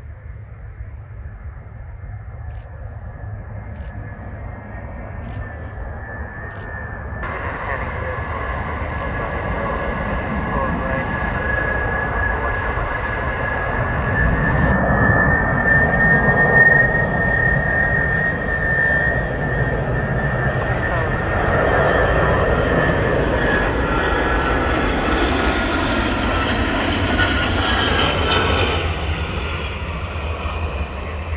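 Ilyushin Il-62 airliner's four rear-mounted turbofan engines on final approach: a steady high whine over a deep rumble, growing louder through the first half as the jet comes closer. A rising hiss joins it in the last few seconds as the jet nears overhead.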